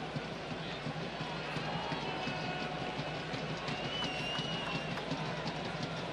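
Ballpark crowd ambience: a steady hum of many voices in the stands, with a faint wavering high tone about four seconds in.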